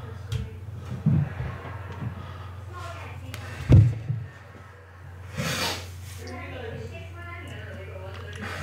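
Handling noises from fitting a wire landing gear onto a model airplane's fuselage on a workbench: a few scattered knocks and clunks, the loudest a thump about four seconds in, then a short rushing hiss about a second and a half later, over a steady low hum.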